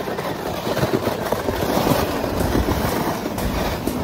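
Plastic toboggan sliding over snow: a continuous rough scraping rumble, crackling with the bumps of the snow surface.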